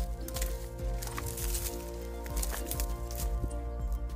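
Background music of sustained chords, with scattered crackles of dry bracken and undergrowth being pushed through underfoot.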